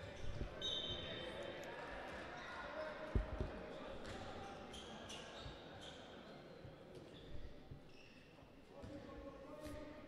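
Faint sounds of play on an indoor handball court: a few thuds of the ball or feet on the floor, the clearest about three seconds in, and brief shoe squeaks, with distant voices.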